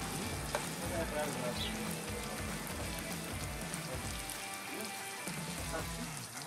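Bacon sizzling steadily as it fries in a camping frying pan over a charcoal grill, with background music underneath.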